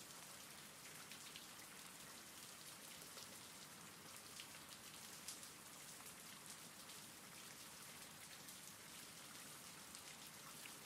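Faint, steady rain with scattered small drop ticks.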